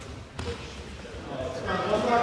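A single short thud about a third of a second in, echoing in a large sports hall, then people's voices rising near the end.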